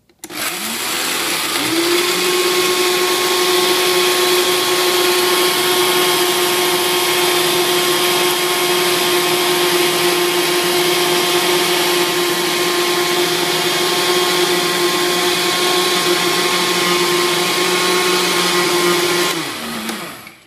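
Vitamix 5200 blender motor grinding coarse popcorn cornmeal finer in the dry container. It switches on and rises in pitch over about a second and a half to a steady high-speed whine over the hiss of the grinding meal, then winds down just before the end as it is switched off.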